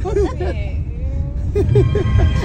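Steady low rumble of engine and road noise inside a moving passenger van's cabin, with voices over it; a man laughs near the end.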